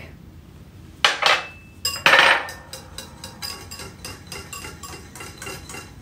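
Wire whisk beating a liquid marinade in a ceramic bowl, its wires clicking quickly and unevenly against the bowl. Two louder knocks of a small glass dish come before it, about one and two seconds in.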